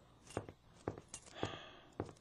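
Footsteps on a hard floor, several sharp steps at roughly two a second, with a soft breathy sigh about one and a half seconds in.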